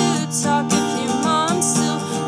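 A woman singing an indie song, accompanying herself on a strummed acoustic guitar; her voice bends and slides between notes over the steady chords.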